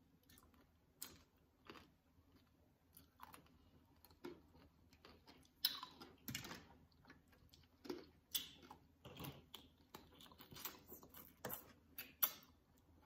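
Close-up biting and chewing of tanghulu, fruit skewers coated in a hard candied-sugar shell: scattered crunches and chews, the sharpest about halfway through.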